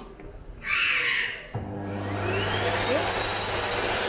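Sensor-activated hand dryer starting about one and a half seconds in, then running with a steady motor hum and a strong rush of air. A brief hiss comes a second before it starts.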